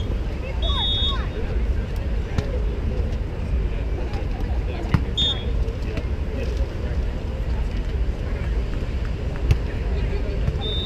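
Beach volleyball rally: a few sharp slaps of hands striking the ball, spread across the rally, over a steady low rumble. A short, high whistle-like tone sounds near the start, with voices in the background.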